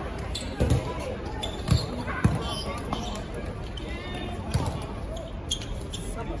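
Dodgeballs thudding during play, several separate hits on the court or on players, the loudest about two seconds in, with players' voices calling out around them.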